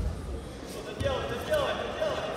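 Judoka's body hitting the tatami mat with a sudden thud, followed by two more thumps about a second in as the fighters scramble, with shouting voices in a large hall.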